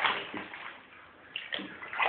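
Bathwater splashing as a hand scoops and pours it over a baby's head in an infant bathtub: one splash at the start that fades over about half a second, then smaller splashes near the end.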